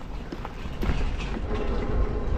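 Riding noise from an electric bike on the move: low wind rumble on the microphone and tyre noise, with scattered clicks and rattles. A faint steady hum comes in about halfway through.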